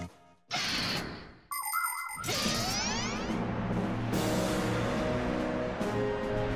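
Cartoon sound effects: a short swish, a bright ding, then a rising swoosh, leading into steady background music.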